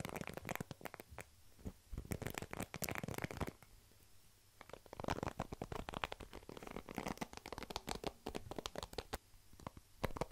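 Close-miked scratching and plucking of a hairbrush's plastic bristles, with fingertips run over the bristles and the brush rubbed on a foam microphone windscreen. It comes as dense bursts of fast crackly scratches, with a short pause about four seconds in.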